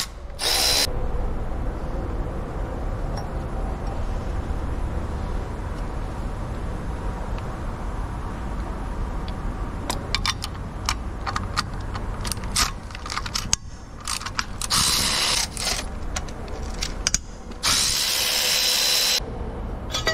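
Cordless electric ratchet running in three short bursts, one just at the start and two near the end, as it backs out small 8 mm bolts. Sharp ratcheting clicks come in between, over a steady low hum.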